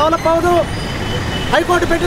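A man speaking in Telugu breaks off for about a second, then speaks again. A low, steady background noise runs beneath the speech.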